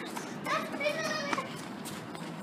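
A child's high-pitched voice calling out for about a second, starting about half a second in, with no clear words.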